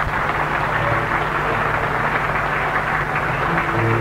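Crowd applauding, an even and sustained clapping, with music starting to come in near the end.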